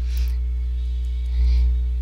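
Steady electrical mains hum with a row of overtones on the recording, swelling briefly a little past halfway.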